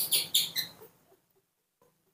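Newborn baby monkey crying: a quick series of short, high-pitched squeals in the first second. It is hungry, screaming for milk.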